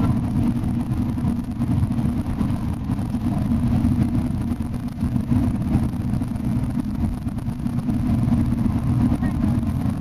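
Long-distance coach running at highway speed, heard from inside the cabin: a steady low rumble of engine and road noise.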